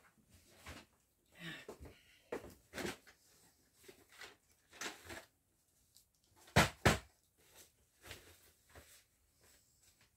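Rummaging through household things in search of a felt-tip marker: scattered light knocks and rustles, with two loud knocks in quick succession about six and a half seconds in.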